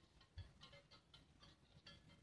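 Near silence with faint, quick ticks several times a second, and a low bump about half a second in.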